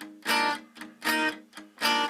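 Acoustic-electric guitar playing a rhythm riff: three loud strummed chords about three-quarters of a second apart, with short, quieter palm-muted notes on the open A string between them.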